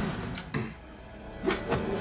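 Fight sound effects from a TV episode's soundtrack: two sharp hits about a second apart over a low rumble.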